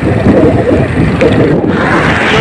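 Loud, steady wind buffeting on the microphone of a camera riding along on a moving bicycle.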